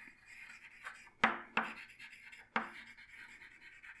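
Chalk writing on a chalkboard: a faint scratchy rubbing as the letters are drawn, broken by sharp taps where the chalk strikes the board, the loudest about a second in, a moment later, and again about two and a half seconds in.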